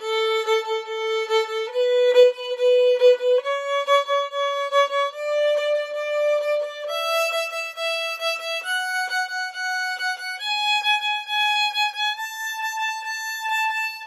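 Violin playing a one-octave A scale upward, from A to the A an octave higher, in eight even steps of about 1.7 seconds each. Each note is bowed several times in the shuffle-bowing pattern of one long stroke and two short ones (down, little, up, little), giving a pulsing fiddle rhythm.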